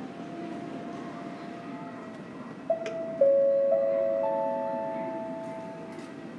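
Four-note electronic PA chime in an airport terminal: four sustained tones about half a second apart, the second lower and the last highest, ringing on together and slowly fading. It is the signal that a public-address announcement is about to start. Before it, a steady low hum of the terminal hall.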